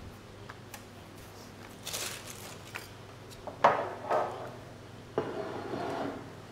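Handling sounds of a plastic plunger tart mold being pressed into pastry dough on a plastic-covered board: scattered light clicks, a sharp knock about three and a half seconds in with a second one just after, and rustling near the end.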